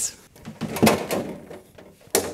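Handling noise from an electrical power cord being gathered up in the hands: a few soft knocks, clicks and rustles. The motor is not running.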